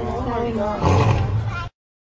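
Male lion roaring: a call that wavers in pitch, then a louder, deeper surge of the roar about a second in, cut off suddenly shortly before the end.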